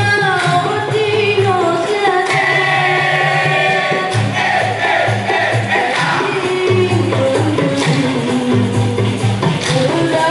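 Dikir barat troupe singing in chorus over a steady, pulsing percussion beat.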